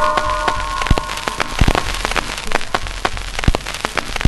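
Irregular crackling: a dense run of sharp pops and snaps of uneven loudness over a faint hiss, used as a sound effect between songs. A few held musical notes die away under it in the first second and a half.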